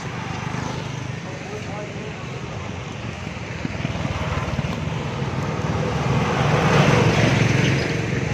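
Street traffic noise that swells to a vehicle passing close by, loudest about seven seconds in, then eases.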